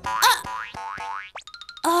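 Cartoon spring 'boing' sound effects over light background music: a bouncy pitched blip, then several quick rising glides and a short run of plinking tones. A high cartoon voice calls 'ah' near the end.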